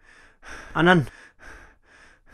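A man breathing hard in a series of short, audible sighing breaths, with one word called out, falling in pitch, just before a second in.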